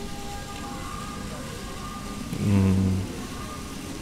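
Steady splashing of the Friendship of Nations fountain's water jets, with a man's short, low hesitant 'mmm' a little past halfway.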